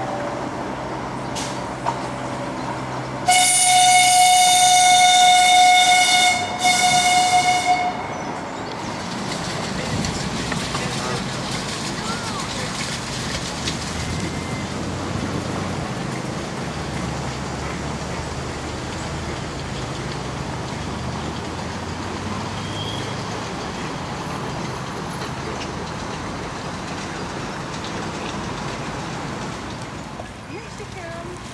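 Miniature railway train running, then its horn sounds in two blasts about three seconds in: a long one of about three seconds, then a shorter one. Afterwards a steady outdoor background noise.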